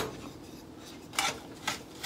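A wooden spoon scraping through brown sugar and browned butter in a skillet, two short soft strokes a little past the middle, over a faint steady hiss.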